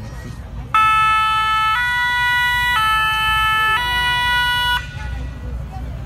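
Fire engine's two-tone siren sounding its alternating high-low notes about once a second, four notes in all, starting about a second in and stopping near the end.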